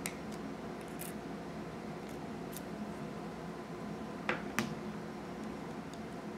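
Small handling clicks as a SIM ejector pin releases the metal SIM card tray of a Samsung Galaxy S7 and the tray is worked out: a faint click at the start, a few light ticks, then two sharper clicks about a third of a second apart about four seconds in, over quiet room tone.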